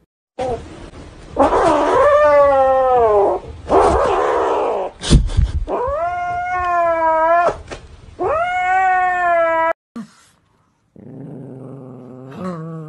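A grey cat yowling in long, drawn-out wails, three or four of them, each bending up and down in pitch, with harsh noisy stretches between them. Near the end a lower, rougher growl from a small dog begins.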